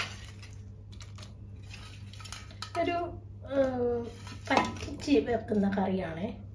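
A steel colander clinking and scraping against the rim of a clay pot as sardine pieces and shallots slide into the curry gravy, with a sharp knock at the start. A person's voice follows from about halfway.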